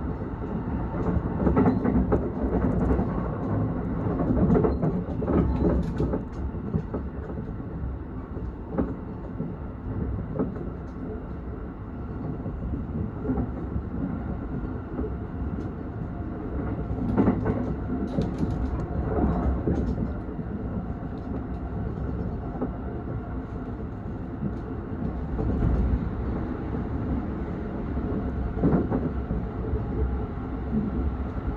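Running noise of an electric train heard from inside the carriage: a steady rumble of wheels on rail with irregular clicks and knocks over rail joints and points. A little past the middle it grows louder for a few seconds as another train passes close alongside.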